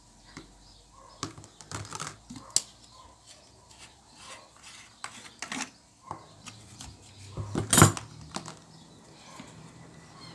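Scattered small clicks and taps from craft materials (wire, a plastic glue bottle, pliers) being handled on a tabletop, with one louder clack near the end.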